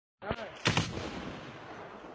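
Gunshots: a sharp report near the start, then two louder reports in quick succession a moment later, ringing out in a long echo.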